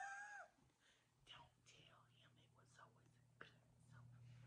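A woman's short vocal sound in the first half second, then near silence with faint whispering.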